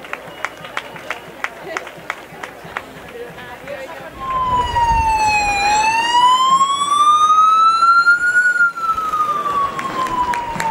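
Emergency vehicle siren in a slow wail: it starts about four seconds in, its pitch falls, rises over about three seconds and falls again, loud over everything else. Before it come sharp taps, about three a second.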